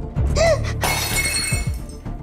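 A sudden shattering crash, with a ringing tail that lasts about a second, starting a little under a second in, over background music.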